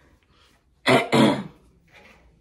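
A woman clearing her throat with two quick, harsh coughs about a second in.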